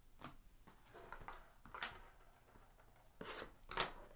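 Faint handling of a cardboard trading-card box on a table: a few light taps and knocks, then a short rustling scrape near the end.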